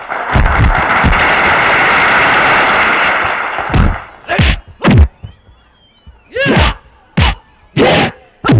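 A crowd cheering, with impact hits over it, cuts off about three seconds in. A run of about six sharp punch-and-kick impact sound effects follows, some with short shouts from the fighters.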